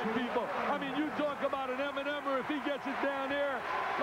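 Men's voices talking throughout, over a steady background haze of arena noise.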